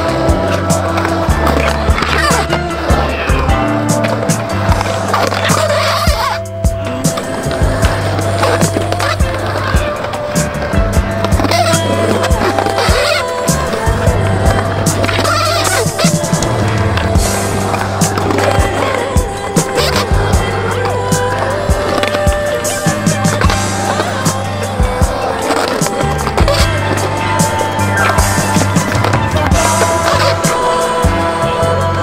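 Music track with a steady, blocky bass line, over the sounds of a skateboard on concrete: wheels rolling and repeated sharp clacks and impacts of the board.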